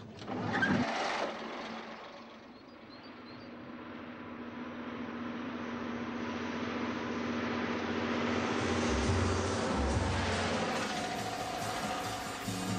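Ikarus-260 city bus on the road, its diesel engine and tyres growing steadily louder as it approaches and passes close by.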